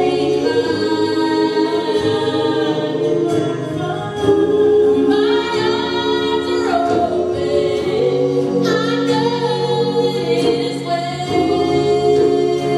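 Gospel choir singing in harmony, holding long chords that change every second or two, with no drums heard.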